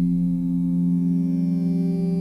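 Background music: a soft, sustained chord held steady with no beat.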